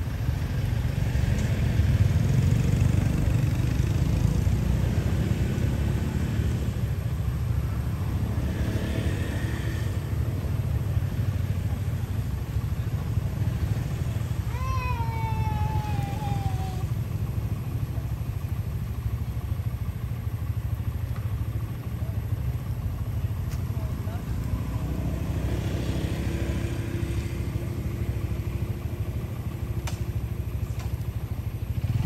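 A steady low engine-like rumble with voices in the background, and about halfway through a single drawn-out, falling cry from a macaque.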